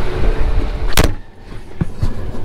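Wind noise on the microphone, then a combine cab door shutting with one sharp bang about a second in, followed by a small click.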